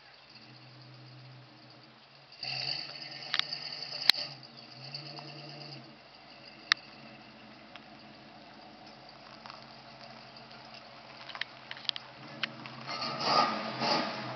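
A 1967 Ford Mustang fastback's engine running at low revs as the car drives off down the driveway, a steady low hum that gets louder near the end as the car turns back toward the camera. A few sharp clicks come over it, the loudest about four seconds in.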